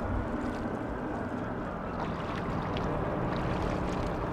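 Shoreline water ambience: small lapping and splashing of water over a steady low rumble.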